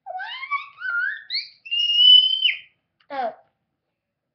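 A child's voice sliding upward in a rising wail, ending in a high held squeal that cuts off suddenly.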